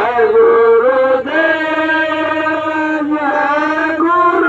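A man chanting a devotional chant through a handheld microphone, in long held notes with a short break about a second in.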